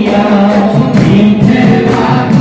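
Men's chorus singing dihanam, an Assamese devotional hymn, in a group, with small brass hand cymbals (taal) struck about twice a second.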